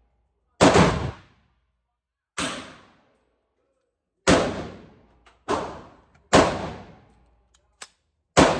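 AR-15-style pistol fired semi-automatically at an indoor range: five single shots at uneven intervals, each with a short reverberant tail, the second one weaker. A faint click near the end.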